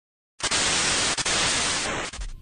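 Loud static hiss that starts abruptly out of dead silence about half a second in, even and hissy, with a couple of very brief dropouts.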